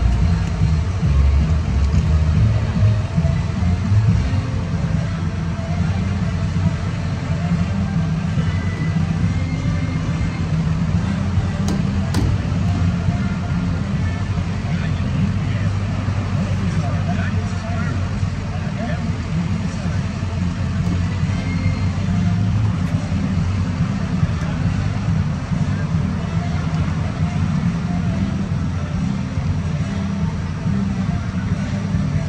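Steady low rumble with people's voices from the surrounding crowd.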